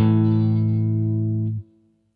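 Electric guitar A5 power chord, fretted with the first finger at the fifth fret, struck once and left to ring for about a second and a half, then muted abruptly.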